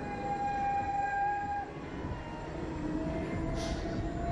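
Steady low rumble of wind on a ride-mounted microphone, with a steady mechanical whine from the SlingShot ride as the capsule is lowered. The whine stops under two seconds in, a lower one starts about three seconds in, and there is a short hiss near the end.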